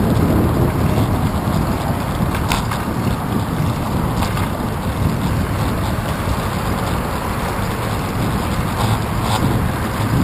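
Wind buffeting the microphone of a handlebar-mounted action camera on a moving bicycle: a steady low rumble, with a few light clicks.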